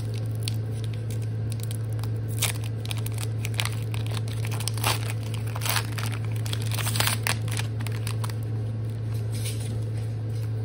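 Foil wrapper of a Pokémon trading-card booster pack being torn open and crinkled by hand, in a string of short rips and rustles through the middle. A steady low hum runs underneath.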